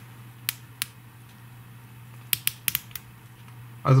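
Orient Ray 2's 120-click dive bezel being turned by hand, ratcheting in sharp clicks: two single clicks in the first second, then a quick run of about six clicks around two and a half seconds in.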